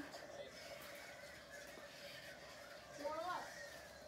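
A faint, hushed human voice, a brief murmur about three seconds in, over a faint steady hum in a quiet room.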